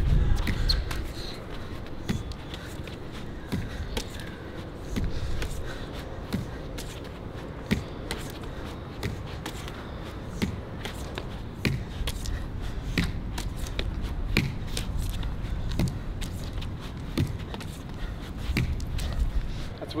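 Rubber lacrosse ball thrown hard against a concrete wall and caught back in a lacrosse stick, over and over: sharp knocks coming about once or twice a second.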